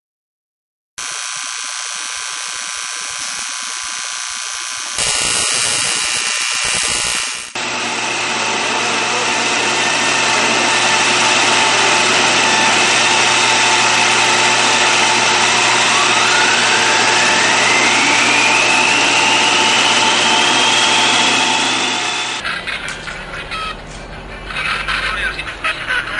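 Electronic noise and hum, a dense steady hiss with fixed tones, changing abruptly twice early on; in the middle a whistle glides slowly upward, and near the end the sound changes again.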